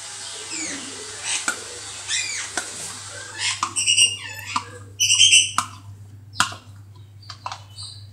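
Birds calling, with a few sliding chirps followed by two loud, high squawks about four and five seconds in, over a steady low hum. A spoon clicks several times against a plastic cup and bowl while butter is scooped out.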